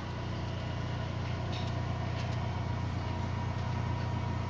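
2007 Ford Fiesta engine idling steadily, a low even hum. The fuel-pump wire that an anti-theft blocker had been cutting has been rejoined, so the engine keeps running instead of stalling.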